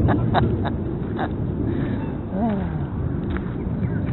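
Low rumble of wind on the microphone, with a few light clicks early on and one short honk-like call from the waterfowl on the lake about halfway through, its pitch rising then falling.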